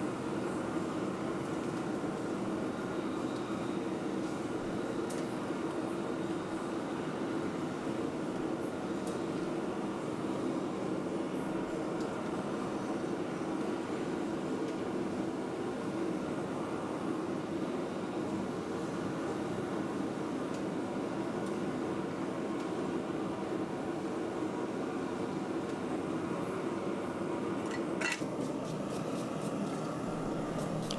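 Forge running nearby with a steady rushing noise while a hot steel billet is twisted in a vise. A few sharp clicks come near the end.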